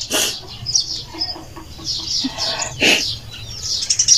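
Domestic chickens clucking in short low pulses, with small birds chirping high above them. Two brief breathy rushes come at the start and again about three seconds in.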